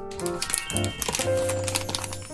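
Background piano music, with dense crinkling from a plastic packaging pouch being handled that starts a moment in.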